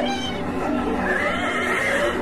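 A drawn-out, wavering animal cry used as a film sound effect for a flying creature, with a long high call in the second half, over a steady low drone.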